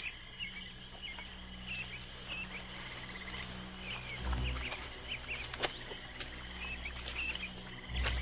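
Small birds chirping in short, repeated calls over a steady low hum, with a few sharp clicks.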